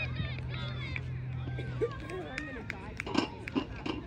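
Indistinct background voices of several people talking, with a steady low hum that stops about halfway through and a few short sharp sounds near the end.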